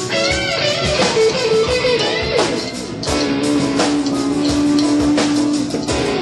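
Live rock band: an electric guitar plays a lead line with bent notes and one long held note through the second half, over a Mapex drum kit keeping a steady beat.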